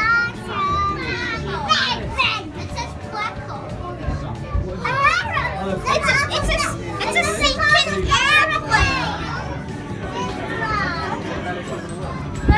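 Children's voices: high-pitched chatter and calls that no words can be made out of, with music underneath.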